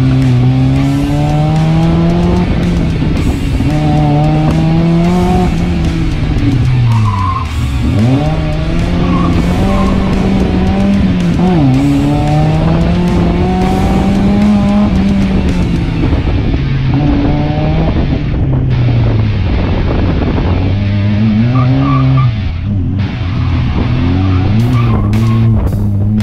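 Mazda MX-5 Miata's 1.6-litre four-cylinder engine revving hard through an autocross run, its pitch rising and falling with the throttle and dropping sharply twice as the driver lifts. A few short tyre squeals come through.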